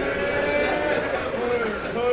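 A man's voice chanting an elegy in long, wavering held notes.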